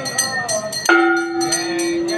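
Temple aarti music: bells or cymbals strike at a steady pace of about four a second, with voices singing alongside. Just before the middle a sustained steady tone starts sharply and holds.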